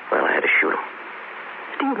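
Radio-drama dialogue in an old broadcast recording with steady hiss: a short breathy vocal sound in the first half second, then a voice starting to speak again near the end.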